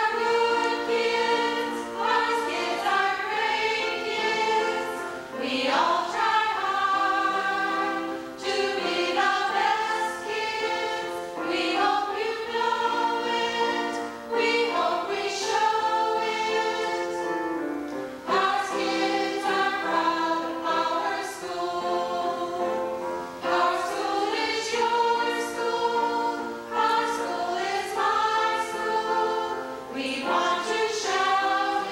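A small choir of women singing a school song together in phrases with short breaks for breath, accompanied by an electronic keyboard.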